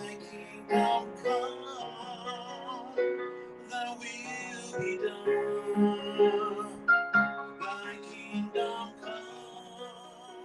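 A man singing, holding notes with vibrato, while he accompanies himself on piano.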